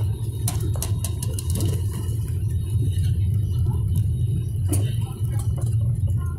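Cabin noise of a jet airliner rolling on the ground: a steady low rumble from the engines and wheels, with scattered short rattles and knocks.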